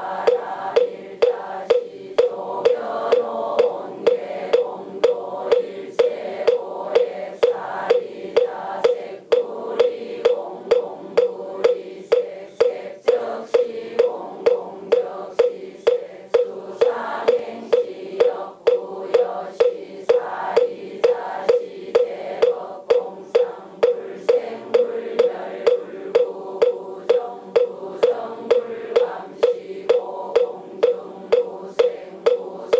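Moktak (Korean Buddhist wooden fish) struck in a steady beat, about two knocks a second, while the congregation chants together in unison.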